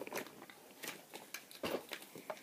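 Faint clicks and scrapes of a plastic toy car being handled and pulled away, with a slightly louder knock near the end.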